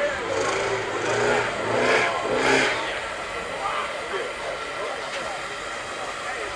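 Indistinct chatter of several people talking at once, louder about two seconds in, over a low steady hum.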